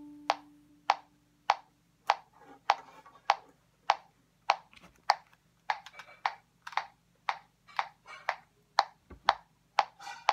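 The last bowed violin note dies away, while a small electronic metronome clicks steadily at about 100 beats per minute, one sharp click every 0.6 seconds.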